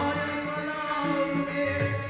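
Devotional bhajan music: a harmonium sounding held notes under group singing, with a steady percussion beat about twice a second.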